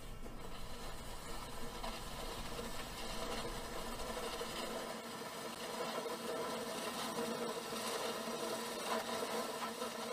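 A steady mechanical whirr with a light rattle, like a small machine running evenly.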